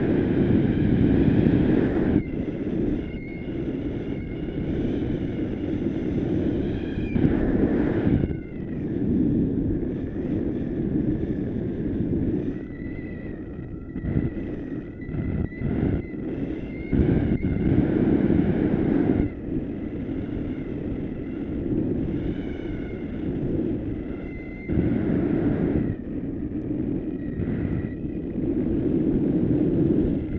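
Airflow buffeting the camera microphone during a tandem paraglider flight: a loud, low rushing that swells and drops every few seconds.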